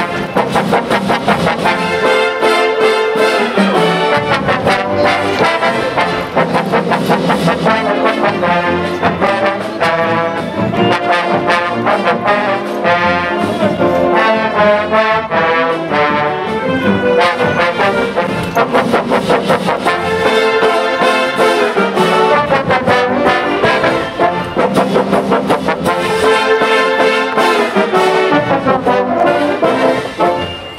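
High school brass marching band playing while marching: trombones, trumpets, euphoniums, saxophones and sousaphones in full ensemble over a steady beat.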